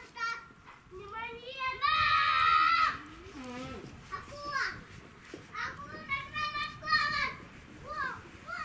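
Children shouting and calling out, with two long high-pitched calls: the louder one about two seconds in, another from about six to seven seconds.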